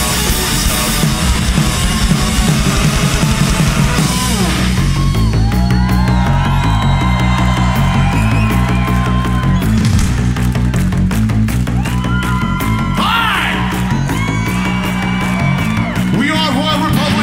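Rock band playing live through a festival PA. A dense full-band passage gives way about four seconds in to a sparser groove of bass riff and steady drum beat, with lead notes that slide and bend in pitch.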